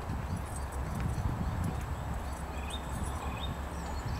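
Distant M62 diesel locomotive's two-stroke V12 engine, a low uneven throbbing rumble as it approaches with its train. A few faint bird chirps sound over it.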